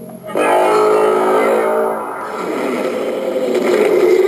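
Electronic sound effect from the Hasbro Marvel Legends Infinity Gauntlet replica's built-in speaker, set off by pressing the Mind Stone. A loud, many-toned effect starts about a third of a second in, then turns into a noisier, wavering tone in the second half.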